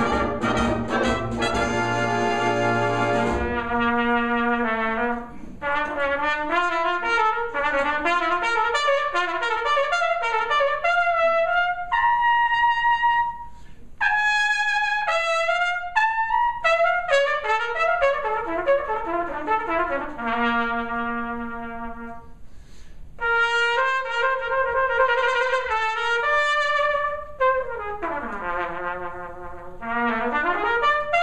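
Solo cornet with a brass band: the band holds a chord at the start, then the cornet plays largely alone in rapid runs and arpeggios, with a few held high notes and a fast run down and back up near the end.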